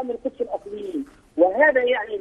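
Speech: a man talking over a telephone line, his voice thin and narrow, with a drawn-out low hesitation sound in the middle and a short pause before he goes on.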